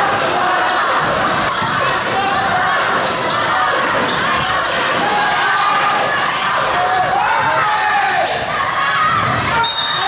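Basketball game in a large, echoing gym: a basketball dribbled on the hardwood court, with sneakers squeaking and spectators talking and calling out throughout.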